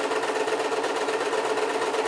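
Electric domestic sewing machine running steadily at an even speed, stitching cloth.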